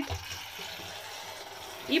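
Steady light churning and splashing of bathwater stirred by the beating tail of a battery-powered swimming toy fish.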